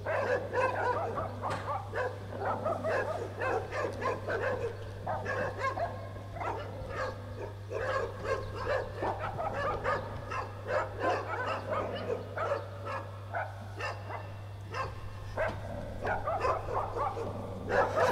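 Several dogs barking, a steady run of short overlapping barks and yips that never lets up; in the play they are set off by someone coming through the gate.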